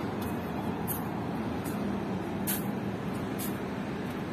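Steady traffic noise of cars in a busy car park. Short soft hisses come through it about once a second.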